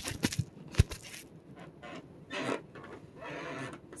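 Handling noise: a few sharp knocks and clicks in the first second as the phone camera is moved, then soft rustles and swishes of stretch spandex fabric being lifted and held up.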